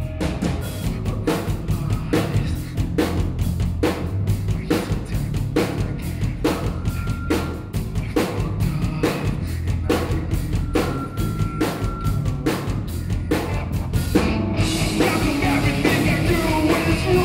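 Live rock band playing a drum-and-bass-driven section: a steady, rapid run of drum-kit hits over low bass guitar notes. About a second and a half before the end the rest of the band comes in, louder and brighter.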